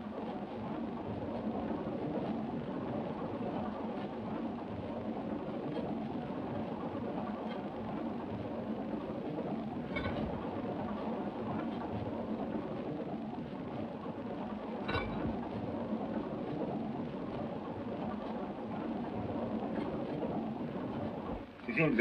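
Steady rumbling noise of a train running, with a faint click about ten seconds in and another about fifteen seconds in.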